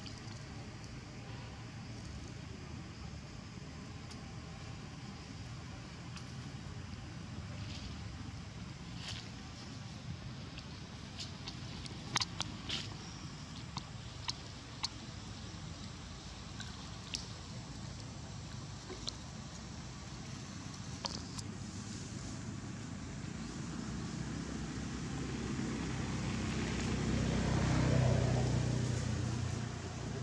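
A motor vehicle going by, growing louder to its peak a couple of seconds before the end and then falling away, over a steady low rumble. Scattered small clicks and rustles, like dry leaves being disturbed, come through the middle.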